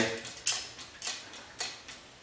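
Craftsman motorcycle and ATV lift being pumped up: three sharp metal clicks about half a second apart as its steel locking rod rides back over the notched lock bar.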